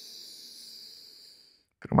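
A long, deep inhale through the left nostril while the right is held shut with a thumb: the in-breath of alternate nostril breathing. The airy hiss fades out about one and a half seconds in.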